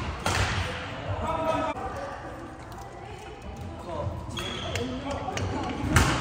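Badminton play in a large indoor hall: sharp racket strikes on shuttlecocks and brief high squeaks of court shoes on the floor, with voices talking in the background.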